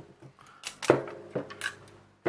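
Steel tape measure and plastic-cased battery being handled on a desk: a few sharp clicks and knocks, the loudest a little under a second in, some with a brief ring.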